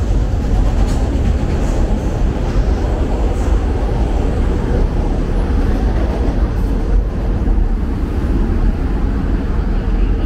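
Elevated train running on the overhead tracks, a loud, steady rumble that holds without a break.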